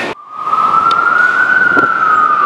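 Emergency vehicle siren in a slow wail. It cuts in just after the start, rises slowly in pitch, then begins a long, slow fall.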